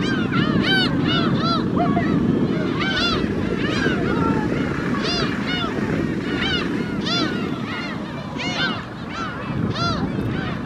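A flock of gulls calling continuously, many short rising-and-falling cries overlapping one another, over a steady low rumble.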